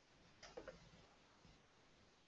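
Near silence: faint room tone, with a quick cluster of three or four soft clicks about half a second in.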